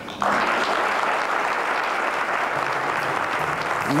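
Audience applauding, breaking out suddenly just after the start and holding steady.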